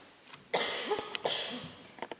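A person coughing in two harsh bursts, the first about half a second in and the second just after one second.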